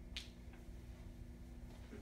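A single sharp snap about a fifth of a second in, from the signer's hands meeting, with a fainter tap shortly after, over a steady low room hum.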